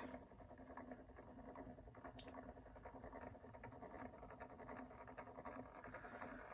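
Near silence, with the faint steady hum and fine ticking of a small motorized display turntable turning slowly.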